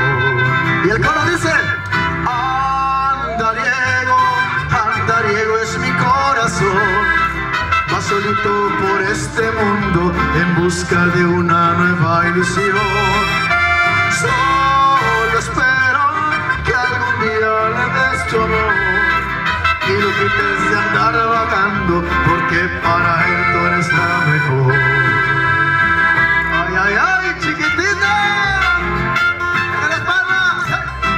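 A man singing a mariachi-style song into a microphone over amplified instrumental accompaniment, played through a PA system.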